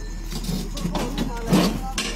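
Indistinct voices of several people talking over one another, with a louder burst about one and a half seconds in, over a steady low hum.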